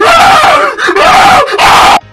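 Very loud, harshly distorted screaming in three bursts with brief breaks between them, cutting off suddenly at the end.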